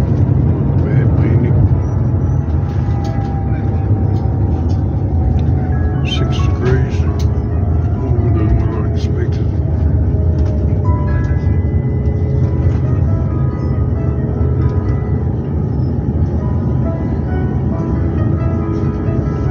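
Steady low rumble inside an airliner cabin as the plane rolls along the runway, with music playing over it.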